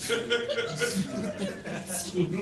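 Laughter: a man chuckling in short repeated bursts.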